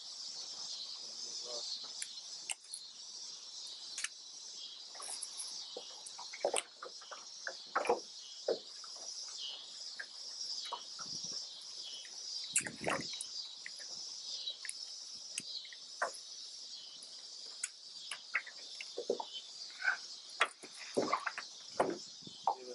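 A steady, high-pitched chorus of trilling insects such as crickets, with scattered short clicks and knocks from handling in the boat.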